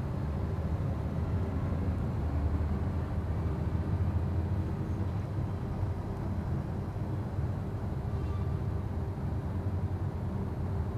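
Steady low rumble of room noise, with no distinct events.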